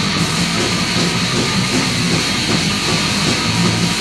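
Punk rock band playing an instrumental stretch: a loud, steady, dense wall of distorted electric guitar and drums with no singing.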